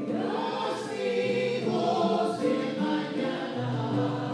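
Church choir singing an offertory hymn, with sustained sung notes.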